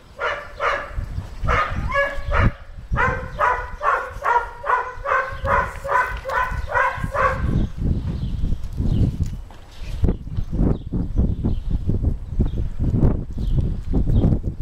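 A dog barking in a quick, even series of short high yaps, about three a second, that stops about seven seconds in. After that, low rustling and bumps.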